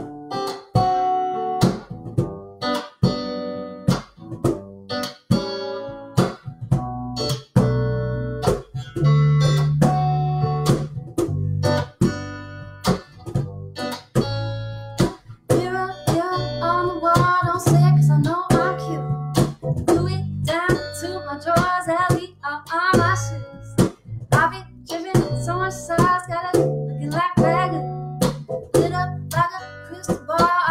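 Guitars strumming chords of a song in B minor, with a woman's singing voice coming in about halfway through.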